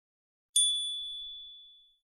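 A single high, bell-like ding about half a second in, ringing on and fading out over about a second and a half.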